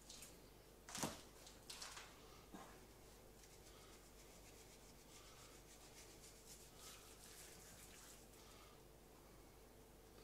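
Near silence, with a soft knock about a second in and a few fainter knocks after it as raw chicken halves are handled on a wooden cutting board, then faint light ticking of salt and spices being sprinkled over the chicken by hand.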